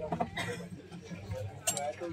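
A few light metallic clinks and knocks as a small brass elephant figurine is set down on a wooden table among other brass ornaments. Voices can be heard in the background.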